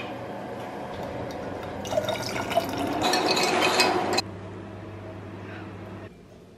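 A red drink poured in a stream into a glass of ice cubes, growing louder as the glass fills and stopping abruptly about four seconds in.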